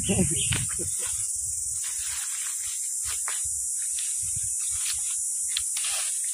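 Steady, high-pitched buzzing of an insect chorus, with a few faint clicks in the second half.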